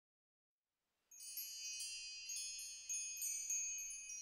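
Song intro: silence for about a second, then soft, high chimes struck several times, each tone left ringing.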